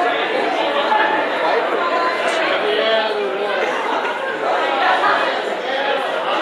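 Crowd chatter: many people talking at once, voices overlapping, with no music playing.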